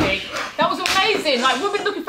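People talking, with one sharp slap right at the start.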